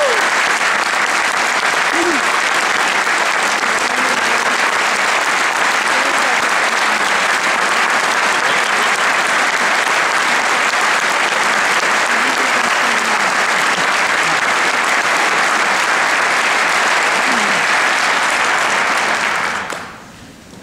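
Audience applauding, loud and steady, dying away near the end.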